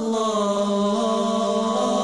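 Closing-theme music of wordless chanted voices holding long, steady notes.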